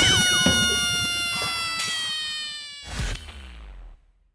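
Edited-in intro sound effect: a loud hit, then a long held note with many overtones sliding slowly down in pitch and fading, with a softer second hit about three seconds in before it dies away.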